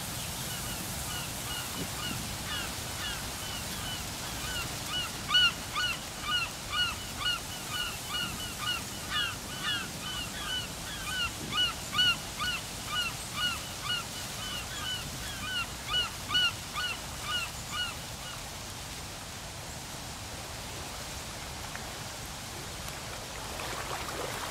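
A waterbird calling over and over, short hooked calls about two or three a second, which stop about 18 seconds in. Beneath them runs a steady hiss of wind or surf on the tidal flats.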